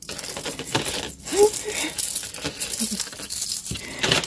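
Shell and bead necklaces clicking and rattling against each other as gloved hands sort through a tangle of them, with light crinkling throughout. A couple of brief murmured hums from a person come about a second and a half in and again about three seconds in.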